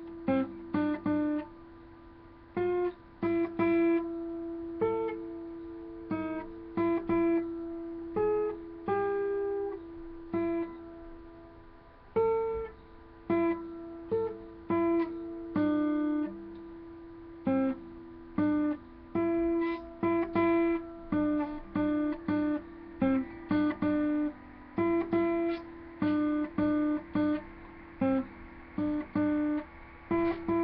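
Acoustic guitar played slowly: single strummed chords and plucked notes that ring out and fade, with short uneven pauses between them, the song still being worked out note by note.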